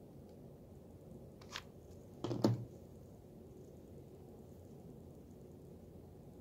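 Quiet handling sounds on a table: a light click about a second and a half in, then a short clatter of knocks a second later, as a hot glue gun is put down and a felt pad is pressed onto a glazed ceramic tile.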